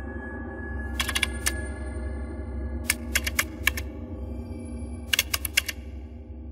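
Keyboard typing: three quick bursts of key clicks, about a second in, around three seconds in and near the end, over a low steady drone.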